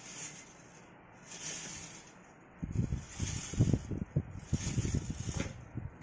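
Bare copper wire coil rattling on a wooden table, a quick run of irregular clattering starting about halfway through, as a battery with magnets on both ends runs through it as a simple electromagnetic train.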